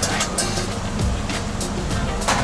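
Steady background noise with a low hum and faint music under it.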